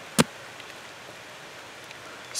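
A single sharp stab of a Spyderco Tenacious folding knife into a foam archery block target, just after the start, over a steady hiss of falling rain.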